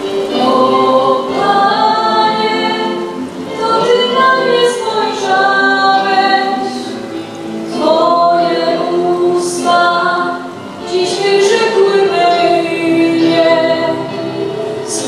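A girl singing a song through a handheld microphone, holding long sung notes with short breaks between phrases.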